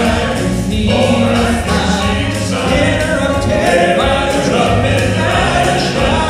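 A male gospel quartet singing in harmony into microphones, accompanied by piano, in a live performance.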